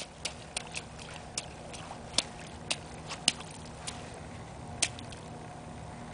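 A toddler's feet stepping and stamping in a shallow mud puddle: a string of short, irregular wet slaps and splats, the sharpest about two to five seconds in.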